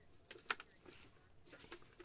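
Faint clicks and light taps of a full-size football helmet's plastic shell being handled and turned over in gloved hands.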